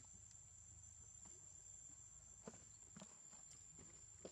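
Near silence: a steady faint high-pitched whine with a few soft clicks, about two and a half and three seconds in.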